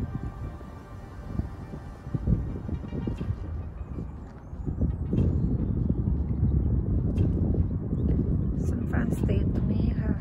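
Wind buffeting a phone's microphone outdoors, a low gusty rumble that grows stronger about halfway through, with faint background music underneath.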